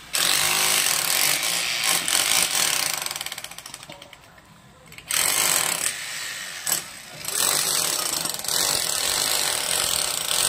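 A power tool running in loud bursts with a hammering rattle: a long run that fades out after about three seconds, a short burst a little past the middle, then another long run near the end.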